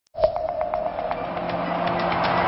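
Channel intro jingle: a sudden struck note opens it, followed by a quick run of strikes about eight a second over a held tone, fading into a steady music bed.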